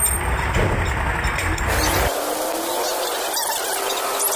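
Hand-lever potato fry cutter being worked, its metal mechanism squeaking, over a low street rumble that cuts off abruptly about two seconds in.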